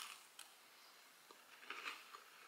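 Faint chewing of a soft-baked chocolate chip and pumpkin sugar cookie: a few soft clicks and crumbly crunches, a little more of them near the end.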